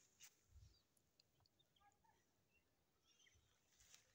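Near silence outdoors: faint open-air ambience with a few faint, short bird chirps.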